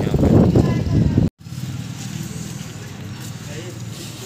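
A man talking over outdoor street noise, cut off abruptly just over a second in, followed by a quieter steady background with faint voices.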